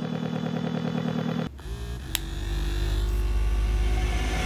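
Small motor of a rose-shaped vibrator buzzing with a pulsing rhythm. After a cut about a second and a half in, a second rose toy hums with a lower, steadier tone that slowly grows louder.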